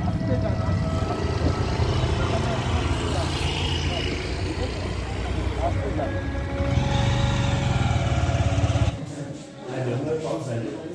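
Motorcycle engines idling and road traffic running steadily, with indistinct voices over them; the sound cuts off suddenly about nine seconds in.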